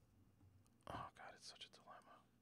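A man whispering a few unclear words, starting about a second in; otherwise near-silent room tone.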